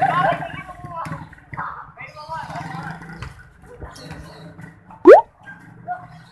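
Players and onlookers talking and shouting over each other, with a short, very loud squeal that sweeps sharply upward in pitch about five seconds in.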